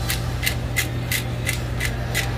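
Hand-twisted pepper mill grinding peppercorns, a rhythmic rasping crunch of about three twists a second.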